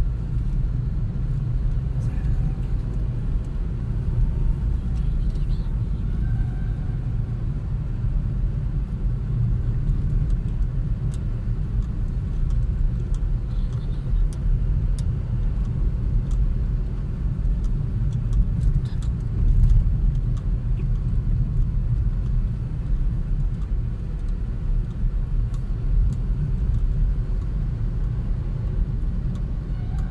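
Steady low rumble of a car driving, heard from inside the cabin, with tyre and road noise from a rough, dusty road surface and a few faint small ticks and rattles.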